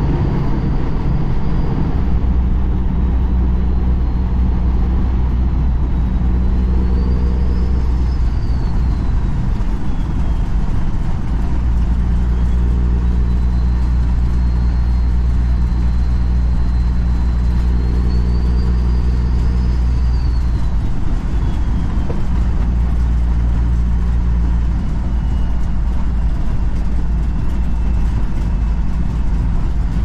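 Semi truck's diesel engine running at highway speed with steady road noise, heard from inside the cab. The engine note shifts a few times, and a faint high whine rises and falls twice.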